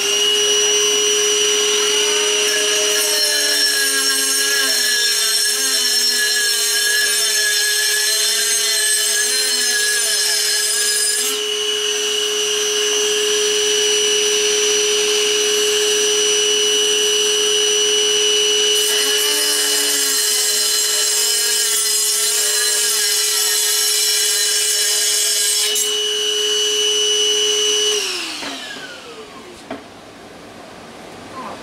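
Milwaukee 2522-20 M12 Fuel 3-inch cordless cutoff saw running at a steady high whine, with the grinding of its wheel cutting into ceramic tile in two long passes, while the compact vacuum draws dust through the hose on its shroud. Near the end the saw is switched off and winds down.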